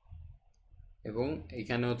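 A short, near-quiet pause, then a man's voice starts speaking about halfway in, in a lecture delivery.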